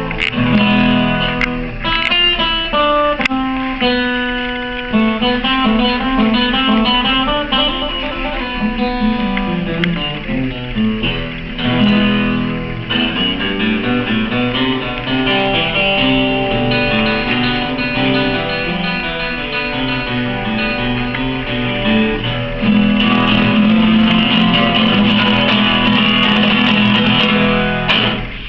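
Live acoustic guitar instrumental: a picked melody with quick runs of notes, giving way to louder, fuller strummed chords near the end.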